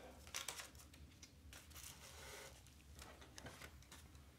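Faint handling sounds of items moved about on a wooden desk: a few light clicks and taps about half a second in, then a soft rustle of paper and plastic packaging.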